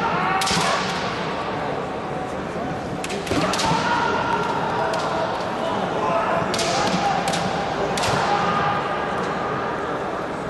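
Kendo bout: bamboo shinai cracking sharply against each other and on armour, with foot stamps on a wooden floor, once just after the start, twice about three seconds in and three times between six and eight seconds in. The fighters shout drawn-out kiai cries with the strikes.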